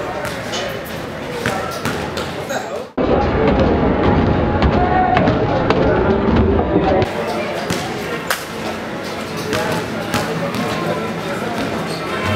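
Footsteps knocking on a metal staircase over the chatter of a crowd. About three seconds in the sound cuts abruptly to a louder, duller stretch of crowd noise for about four seconds, then returns to the lighter knocking.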